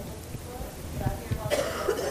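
A person coughing once near the end, over faint talk in a meeting room.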